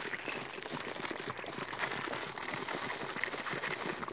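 Air blown through a drinking straw into a plastic cup of compost tea, bubbling steadily for about four seconds: the brew being aerated.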